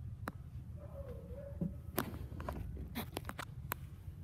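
Footsteps and sharp knocks inside a passenger van's cabin, one about a third of a second in and a quick cluster in the second half, over a steady low rumble.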